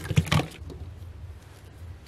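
Hands handling artificial flowers and a ribbon bow on a work surface: a few sharp knocks and rustles in the first half-second, then quiet handling over a low steady hum.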